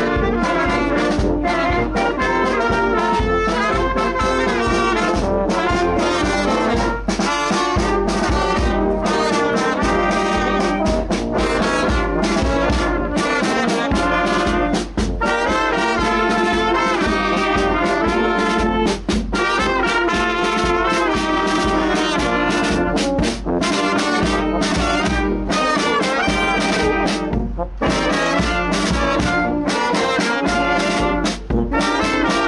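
Brass band playing a tune outdoors: tubas, saxophones and other wind instruments over a bass drum.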